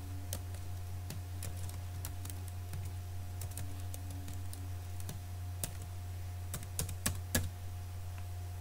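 Keystrokes on a computer keyboard as an email address and password are typed in: irregular taps, with a quicker, louder run of keys near the end. A steady low hum runs underneath.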